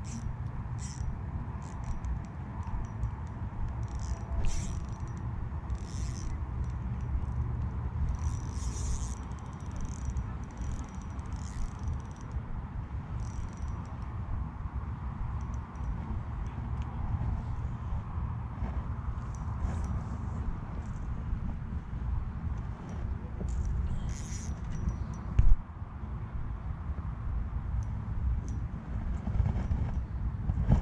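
A small spinning reel being wound through a lure retrieve, with short scraping and clicking handling noises over a steady low rumble. There is one sharp knock near the end.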